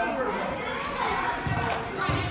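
A basketball bounced on an indoor gym floor, a short low thump about one and a half seconds in, with voices echoing in the gym.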